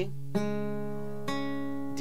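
Acoustic guitar strings picked twice, about a third of a second in and again about a second later, the notes ringing on between the picks. It is a chord played on the A, D and G strings only.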